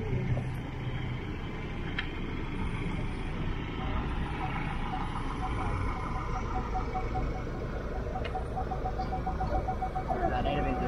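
Ford Ranger Raptor pickup's engine running low and steady while it reverses toward a caravan hitch. From about four seconds in, its parking sensor sounds short, evenly spaced beeps that quicken near the end as the truck closes on the caravan.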